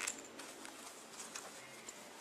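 Faint rustling and a few light, scattered ticks as hands handle faux fur fabric pieces and a zippered pocket.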